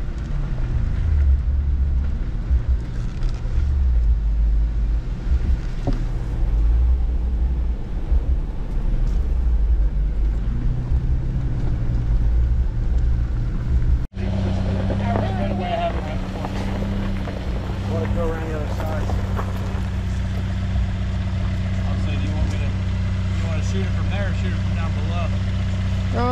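A Jeep driving slowly over a dirt trail, heard from inside the open cab as an uneven low rumble of engine and tyres. About halfway in it cuts to a Jeep engine idling with a steady low hum, with people talking in the background.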